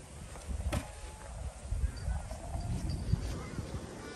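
Footsteps crunching in packed snow at an uneven walking pace, with a low rumble of wind on the microphone and a sharp click about three-quarters of a second in.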